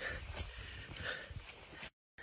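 Faint sounds of people walking a forest trail: footfalls and rustling with camera handling noise. It cuts off suddenly to silence near the end.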